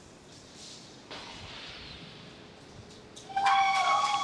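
Steady hiss of a fueled Falcon 9 venting liquid-oxygen boil-off on the pad, starting about a second in. Near the end a much louder steady sound with several level pitches cuts in over it.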